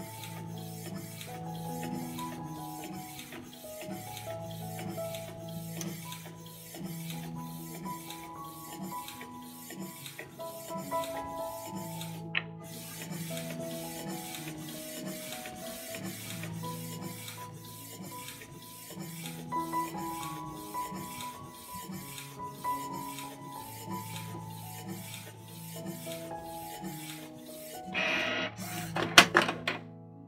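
Background music with a steady beat over a Canon Pixma G3000 ink tank printer printing a photo, its mechanism running continuously as the sheet feeds out. A louder burst of noise comes near the end.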